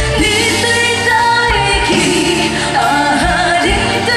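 Two female singers singing a slow Hokkien ballad over a live band, with some long held notes that waver with vibrato.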